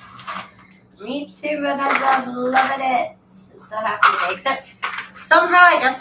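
A woman's voice making drawn-out vocal sounds without clear words, twice, with scattered light clicks and clatter of small hard objects and a steady low hum underneath.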